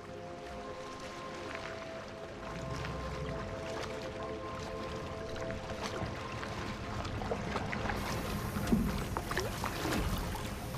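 Background music of long held notes over the steady low rumble of a small boat's motor and water noise, growing louder through the second half.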